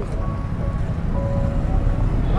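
Steady low rumble of roadside traffic noise, with a few faint short tones above it about a quarter and two-thirds of the way through.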